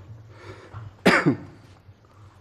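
A man clearing his throat once, a short sharp sound about a second in that drops in pitch.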